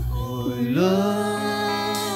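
A woman singing a slow gospel worship song: her voice slides up into one long held note. A low sustained bass note from the accompaniment stops about a quarter of a second in.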